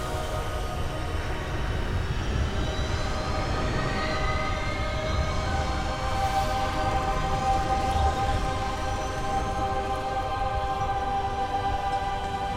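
Dark film score of sustained, layered drone chords, with a few slowly rising tones, over a steady deep rumble.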